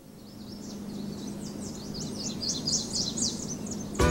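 Birds chirping in a quick run of short, high, falling notes over a steady low hum and background noise that fades in.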